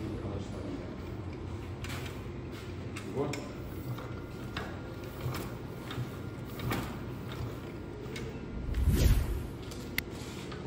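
Scattered mechanical clicks and creaks from a Yamaha DT 180 two-stroke trail motorcycle being mounted and worked by hand, with one heavy low thump about nine seconds in. The engine does not fire.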